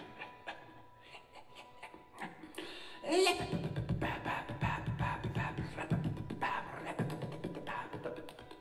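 A little tune tapped out in short, rhythmic taps, heard from out in a concert hall through a handheld recorder's microphones. The taps are sparse and quiet at first, then about three seconds in they become louder, faster and fuller.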